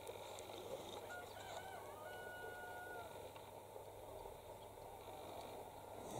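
A faint rooster crow, once, wavering at first and ending in a long held note, over quiet outdoor background.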